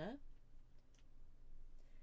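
A few faint light clicks from a paintbrush tapping in the pans of a watercolour paint box as it picks up paint.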